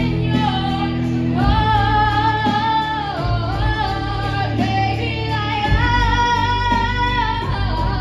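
A teenage girl singing a slow ballad solo into a handheld microphone over instrumental accompaniment, holding long notes of one to three seconds each.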